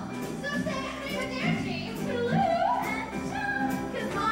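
Young performers singing a musical-theatre song over accompaniment with a steady beat.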